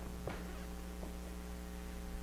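Steady electrical mains hum, with two faint ticks about a quarter second and a second in.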